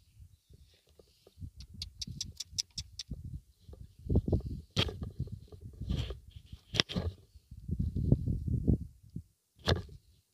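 Low, uneven rumbling of wind and handling on the microphone, with a quick run of sharp clicks about two seconds in and a few single knocks later.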